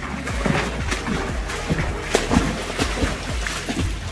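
Water splashing and sloshing in quick irregular strokes from a swimmer's arms, over steady background music.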